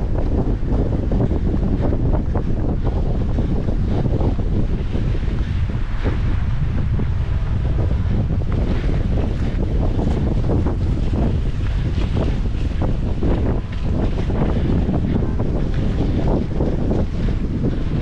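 Wind buffeting the microphone: a loud, steady low rumble. Through it come frequent short knocks, footfalls of a runner on wooden pier decking.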